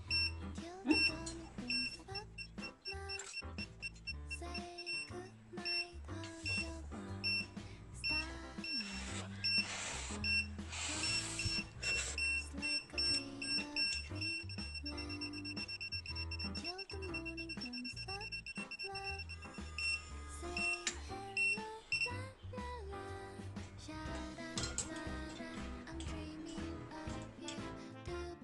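Background music, with a high electronic beep repeating through the first twenty seconds and holding in one long tone for a few seconds near the middle: a kitchen stove timer going off as the noodles finish boiling.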